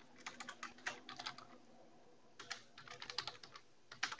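Typing on a computer keyboard: faint, quick keystrokes in two runs with a short pause between them.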